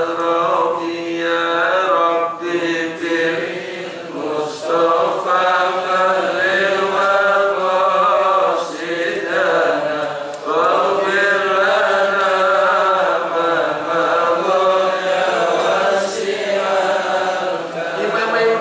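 A man's solo voice chanting in long, melodic phrases, with held notes gliding up and down and short pauses for breath between phrases.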